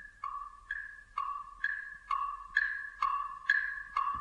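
A two-note chime alternating between a low and a high ringing tone, one note about every half second, growing steadily louder.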